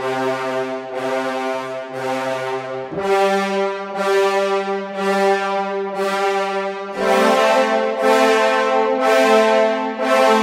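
Sampled French horn ensemble from the Metropolis Ark 3 library playing the half-note repetitions articulation: a chord re-struck about every 0.7 seconds, each note fading before the next. The chord shifts to a higher bass note about 3 seconds in and changes again about 7 seconds in.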